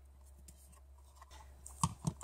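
Faint handling of a plastic craft punch and paper, then a single short knock near the end as the punch is set down on the table.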